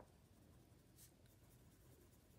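Near silence with faint scratching of a colouring tool on paper, with a couple of brief strokes, one at the start and one about a second in.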